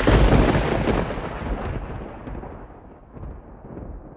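Thunderclap: a sudden loud crack that rolls into a long rumble and fades away over several seconds, with a couple of smaller rumbles near the end.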